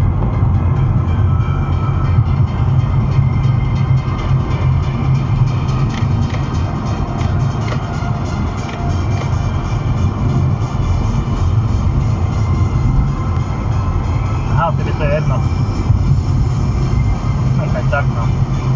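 Music playing on the car's stereo inside the cabin, with a voice heard briefly a few times near the end, over the steady road noise of highway driving.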